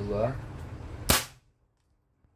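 A PCP air rifle, a Bengal X-Trabig tactical bullpup, fires a single sharp shot about a second in, launching a 17-grain slug over a chronograph. A brief bit of a man's voice comes just before it.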